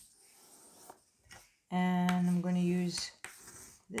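Faint rubbing of heavy paper as a hand presses a fold flat against a wooden table. About halfway through, a woman's voice hums a held, level-pitched 'mmm' for just over a second, with a brief catch in the middle.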